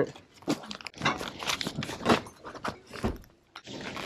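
Irregular crackling and rustling from close handling noise, a quick run of small clicks and crinkles that fades almost to quiet just before the end.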